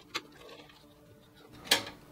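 Removable metal top bracket of a Fractal Design Meshify 2 Compact PC case being released and lifted off the chassis frame: a light click just after the start, then a sharper, louder click near the end as it comes free.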